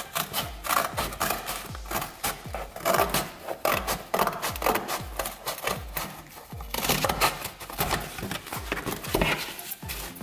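Scissors snipping through thin cardboard from a tissue box, a quick run of repeated cuts, over background music with a steady beat.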